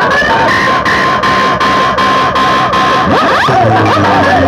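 Siren-like electronic effects from a DJ track played very loud through a large box-and-horn speaker system: a warbling tone, a long held high note, then quick rising sweeps near the end.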